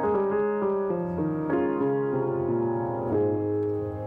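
Solo acoustic grand piano played live: sustained chords and melody, with new notes struck every half second or so and left ringing.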